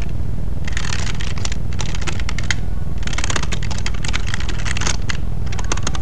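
Rapid keyboard-typing clicks in bursts, pausing briefly about two and a half and five seconds in, over a steady low hum.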